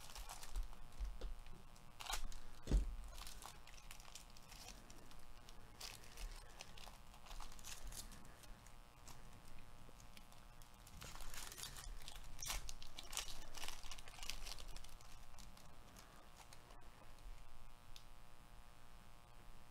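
Foil trading-card pack wrapper being torn open and crinkled in gloved hands: faint, irregular crackling in scattered bursts, loudest a few seconds in.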